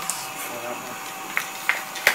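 Steady hiss of background noise with a faint steady tone, and two light clicks in the second half.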